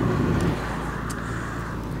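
Fiat Bravo with a 1.4 petrol engine driving past on a road, its tyre and engine noise slowly fading.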